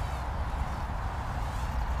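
Wind rumbling on the microphone, with the faint wavering whine of a small brushed hexacopter's six motors in flight.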